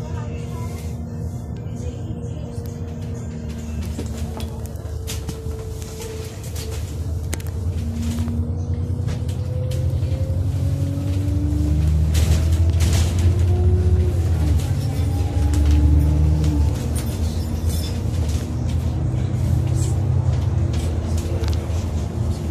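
Alexander Dennis Enviro400 double-decker bus under way, heard from inside on the upper deck: a low engine and road rumble with a drivetrain whine that climbs steadily in pitch as the bus gathers speed. The rumble grows louder through the middle.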